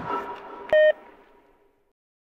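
Outro logo jingle: the last notes of the music fade, then a single short, loud electronic beep sounds about three-quarters of a second in.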